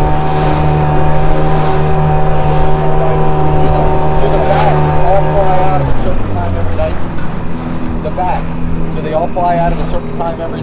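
Small open boat's motor running steadily at cruising speed with water rushing along the hull, then throttled back about six seconds in, its pitch dropping as the boat slows.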